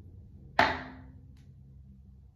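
A single sudden hissing burst about half a second in, starting sharply and fading within about half a second, with a brief 'oh'.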